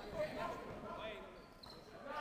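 A basketball bouncing on a wooden sports-hall court during play, faint under distant players' and spectators' voices.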